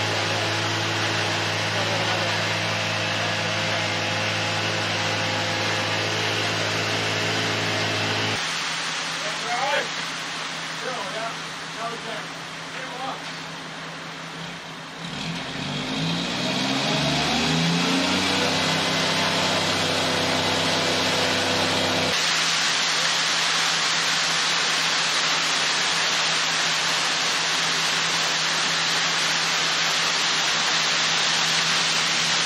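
Concrete mixer truck's diesel engine running steadily, then revving up about halfway through and holding at high revs. From about two-thirds of the way in, a loud, even rush joins it as the drum spins to discharge concrete down the chute.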